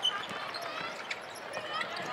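A basketball bouncing on a hardwood court in an arena, a few separate thuds over steady crowd noise.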